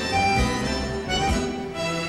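Ballroom dance music playing, instrumental, with held melody notes over a steady beat.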